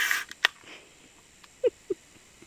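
A frothy beer can being cracked open: a short burst of fizzing hiss at the start, then a sharp metallic click about half a second later.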